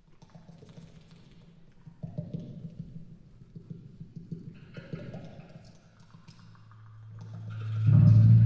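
Live industrial band playing sparse clattering percussion in short rapid rattling runs, then a low droning tone swells up and becomes loud near the end.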